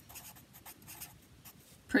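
Sharpie felt-tip marker writing on graph paper: a string of short, faint strokes as a word is written out.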